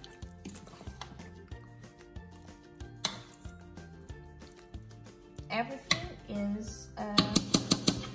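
Metal spoon clinking and scraping against a stainless steel mixing bowl as chicken pieces are worked through a thick marinade. There is one sharp clink about three seconds in and a quick run of clinks near the end.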